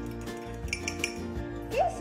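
Steady background music, with a few light clinks of cutlery against a small ceramic dish as beaten eggs are tipped into the mixing bowl, about a second in.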